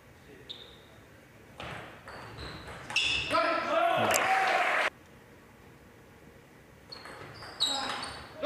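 A table tennis ball striking with a short, high ringing click about half a second in, followed by a hall crowd cheering and shouting from about 1.5 s that cuts off suddenly near 5 s. Near the end the ball clicks back and forth again as another rally starts.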